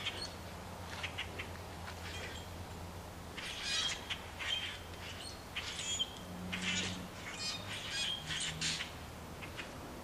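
A flock of blackbirds calling from a tree: many short, overlapping calls, scattered at first and growing busier from about a third of the way in.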